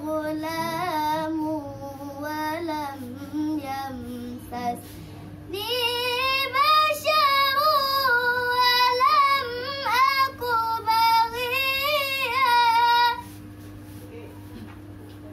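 A young female reciter chanting the Qur'an in melodic tilawah style: a softer phrase, a short breath about five seconds in, then a louder, higher phrase on long ornamented notes that stops about a second before the end. A steady low hum runs underneath.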